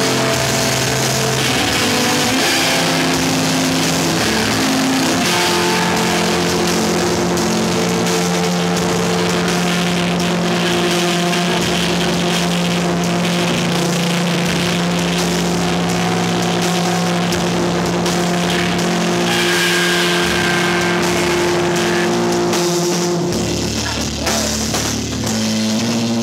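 Live screamo band playing very loud: distorted electric guitars change chords for the first few seconds, then hold one long sustained chord over a dense wash of noise until shortly before the end.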